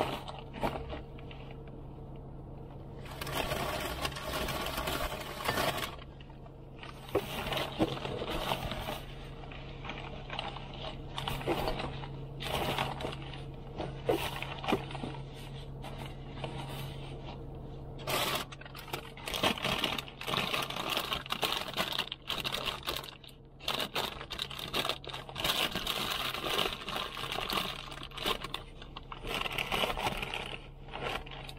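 Food bags and containers rustling, crinkling and knocking as they are packed by hand into a backpack, in irregular bursts with scrapes and clicks, over a steady low hum.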